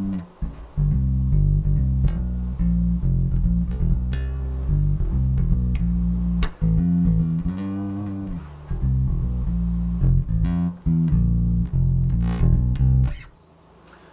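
Zon VB4 headless electric bass played fingerstyle on its neck pickup: a line of low plucked notes with a mellow, round tone, one note gliding up and back down about halfway through. The playing stops about a second before the end.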